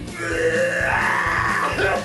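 A long, drawn-out wordless vocal sound, a grunt-like drone from a caller, over background music.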